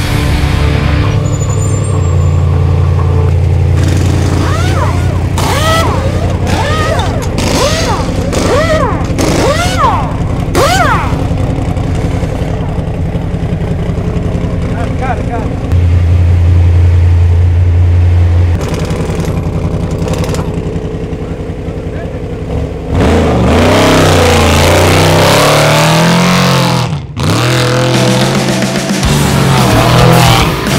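Trophy Truck engine idling through a pit stop while the crew shout over it. About five seconds before the end the engine revs up and down as the truck pulls out.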